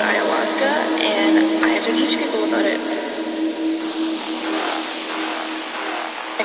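Breakdown in a progressive psytrance track, with the bass and kick filtered out: a held synth drone under fragments of a spoken voice sample, and a noise sweep rising through the middle.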